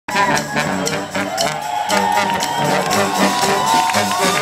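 A marching brass band playing: a sousaphone bass line under trombone, trumpets and saxophones, over a steady snare drum beat.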